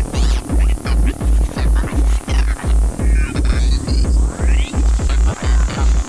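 Free-party tekno from a live set: a heavy four-on-the-floor kick drum comes back in right at the start and pounds a little over twice a second. Rising and falling synth sweeps and short stabs play over it.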